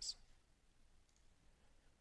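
Near silence: quiet room tone in a pause of spoken narration, with a few faint clicks.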